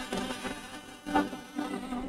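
Church choir singing a hymn, holding the last words of a line; the sustained chord swells briefly about a second in and then fades away.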